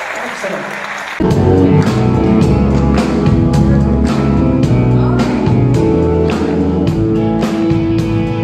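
Audience applauding, then about a second in a live band (drums, bass, guitar and keyboards) starts up suddenly and plays loudly with a steady drum beat.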